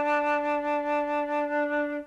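Music interlude: a flute holding one long low note, which stops near the end.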